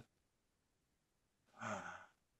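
Near silence, then about a second and a half in a short, soft, breathy vocal sound from a person, lasting about half a second.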